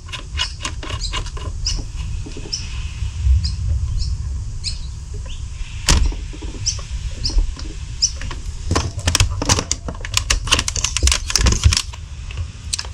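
Screw-on hose chuck of a portable air compressor being turned by hand onto a Schrader valve, giving short squeaks about every half second and a sharp click about halfway. Near the end comes a quick run of plastic clicks and knocks as the compressor is handled against the blaster's stock.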